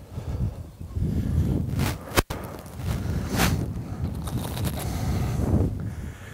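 Footsteps and rustling in dry grass, in uneven scuffs, with a brief dropout in the sound about two seconds in.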